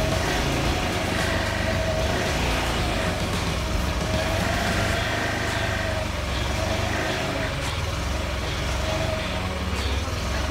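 Malaguti Madison scooter's liquid-cooled engine idling steadily, a constant low rumble with a wavering higher tone above it.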